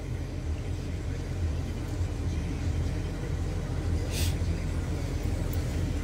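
Steady low road rumble heard inside a moving vehicle's cabin, with a brief hiss about four seconds in.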